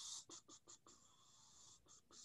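Near silence, with a faint breath-like hiss and a few soft clicks early on.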